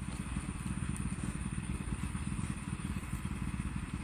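A small engine running steadily in the distance: a low, even rumble, with a faint steady high tone above it.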